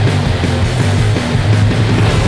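Black metal recording, loud and dense, with distorted guitars and drums.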